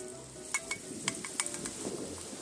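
Chopped aromatics sizzling in hot oil in a steel wok, with a few sharp clinks of a metal spatula against the wok.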